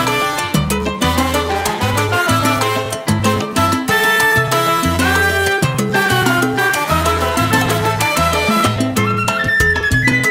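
Recorded salsa music playing: a syncopated bass line under dense percussion and melodic lines.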